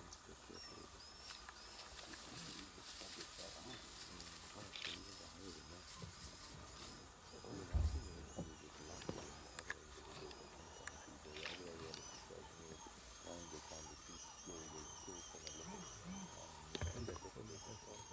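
Quiet bush ambience with many small, repeated high chirping calls, faint low sounds underneath and a single soft thump about eight seconds in.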